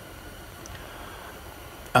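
Quiet room tone: a steady low hiss with no clear event, and a man's voice starting right at the end.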